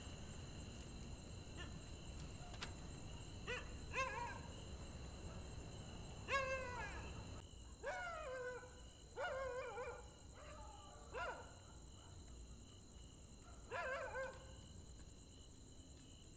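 A dog barking, about ten short, falling barks at irregular intervals, over a steady high drone of night insects.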